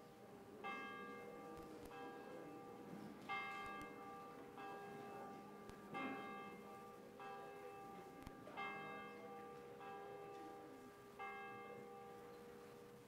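A church bell tolling before a service, faint and ringing on after each stroke. It strikes about every 1.3 seconds, with strokes alternately louder and softer.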